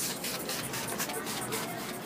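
Hand trigger spray bottle spritzing slip solution onto clear paint protection film in a quick run of short hissing sprays.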